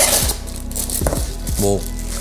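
Background music, with a brief rustle of packaging near the start as a boxed lamp and its wrapping are handled.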